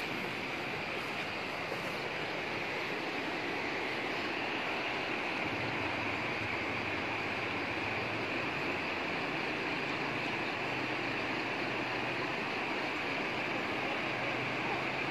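Steady rushing of muddy floodwater pouring across the valley after a landslide, an even noise that holds without a break.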